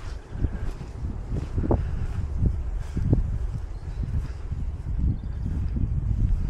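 Wind buffeting the camera microphone outdoors, an uneven low rumble, with a few soft thuds.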